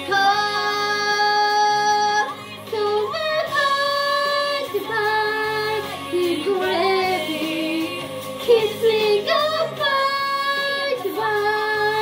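A song: a female voice sings long held notes on "love", sliding up into several of them, over a steady low backing.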